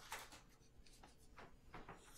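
Faint rustling of a hand and a marker moving over a sheet of paper, a few soft scrapes scattered through the quiet.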